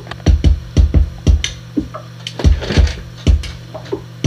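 Korg Volca Drum beat: deep electronic kick hits, several in quick pairs, with a noisy snare-like hit about two and a half seconds in, over a steady low drone.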